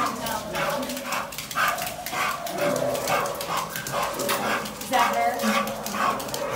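Dog whining in repeated short, pitch-bending cries at a cat caged in front of it. This excited reaction toward the cat is what fails it on a cat-compatibility test.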